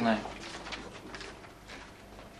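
A man's voice finishing a word, then a quiet pause of room tone.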